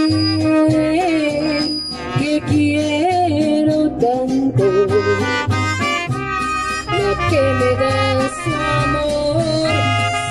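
Mariachi ensemble playing an instrumental passage: two trumpets carry the melody together in harmony over the guitarrón's pulsing bass and strummed rhythm.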